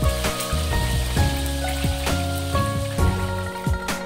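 Hot oil sizzling and bubbling as egg deep-fries in a wok, under background music with a steady beat.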